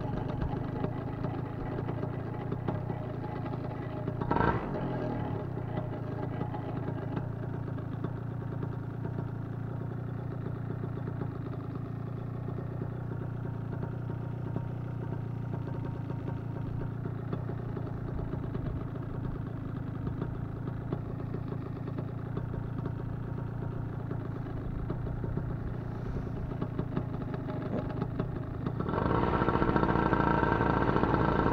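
Paramotor engine idling steadily, with a quick throttle blip about four seconds in that drops back to idle. Near the end it revs up louder, as for a takeoff run.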